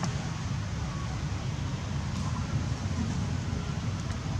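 Steady outdoor background noise: a low, unsteady rumble with hiss above it and no distinct event.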